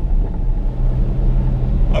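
Car interior noise while driving: a steady low rumble of engine and road, with a low hum that comes in about half a second in.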